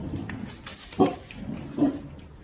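Two short, gruff barks from a Boerboel, one about a second in and another just before the end.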